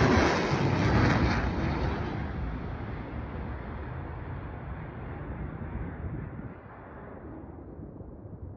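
Surface-to-air missile launch: a sudden loud rocket-motor roar that fades and grows duller over several seconds as the missile flies away.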